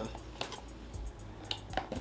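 A cardboard tea box being pried open by hand: a few small clicks and taps of the flap, over faint background music.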